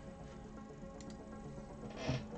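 Quiet background music with sustained tones, with one faint click about a second in, like a plastic Lego brick being handled.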